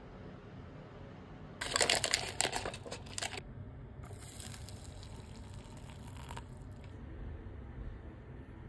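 Packaging crinkling and rustling for about two seconds, then hot water poured from a kettle into a paper cup of instant soup, a steady pour of about three seconds.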